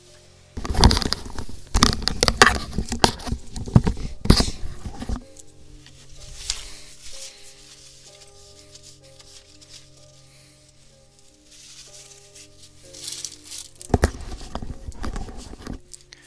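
Paper towel rustling and crumpling close to the microphone in two spells, a long one near the start and a shorter one near the end, while the UV resin spill is cleaned up. Calm background music with slow held notes plays underneath.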